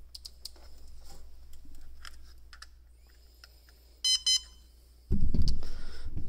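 Small plastic clicks as a balance-lead connector is worked into an ISDT handheld battery checker. About four seconds in, the checker gives two short high beeps in quick succession as it powers up from the pack. A louder low rumble of handling noise follows near the end.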